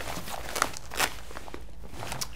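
Fabric of a pair of paintball pants rustling as hands open and lift the waistband, with a couple of soft handling taps about half a second and a second in.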